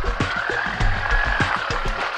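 Mahindra Thar off-roader crawling over a rough dirt track: its engine runs with a low rumble, a whine that rises and falls, and irregular knocks and rattles from the bumpy ground.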